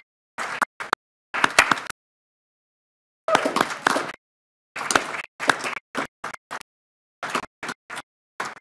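Applause with scattered hand claps, heard in a dozen choppy bursts with the sound dropping out completely between them.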